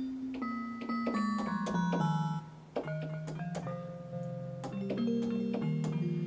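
Yamaha Piaggero NP-V80 digital keyboard played on a struck, pitched-percussion voice: a slow string of single notes that ring on and overlap, with a short break about halfway through.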